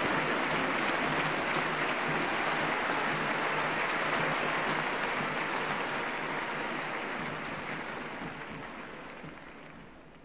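Large audience applauding: a dense, even clapping that fades away over the last four seconds.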